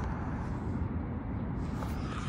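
Steady outdoor background noise, a low rumble with no distinct event in it.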